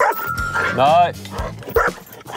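A dog barking and yipping excitedly, with a short rising-and-falling yelp about a second in.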